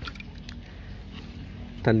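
Faint sloshing of water in a plastic bottle as it is shaken or swirled by hand, with a few light clicks of handling.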